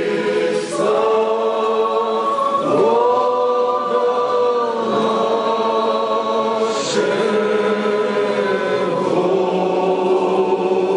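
Orthodox church choir singing a cappella, long held chords changing every second or two.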